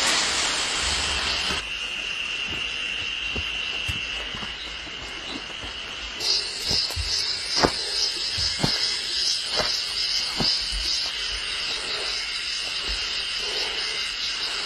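Insects droning: one steady high-pitched drone, joined about six seconds in by a second, higher, pulsing call. A few irregular soft knocks fall in the middle.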